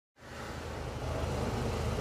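Ferrari Formula 1 car's engine idling, a low steady rumble that fades in at the start.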